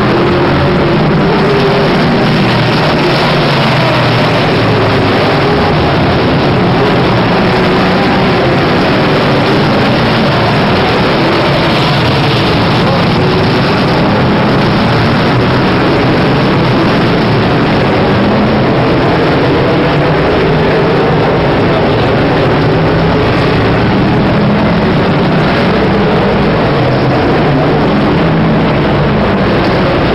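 Motor vehicle engines running continuously at a steady loud level, their pitch wavering up and down slightly, under a constant noisy wash of sound.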